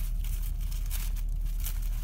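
Paper sandwich wrapper crinkling in irregular short rustles as it is peeled open, over a steady low hum.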